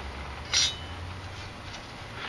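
A single brief clink about half a second in, from gear being handled inside a plastic five-gallon bucket, over a low steady hum.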